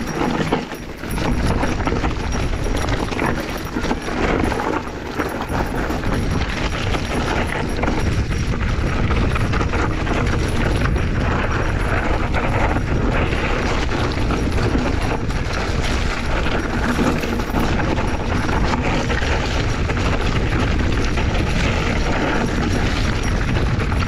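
Mountain bike riding over a rocky trail: a steady rush of wind on the helmet camera's microphone, with the bike rattling and knocking as the tyres roll over rocks.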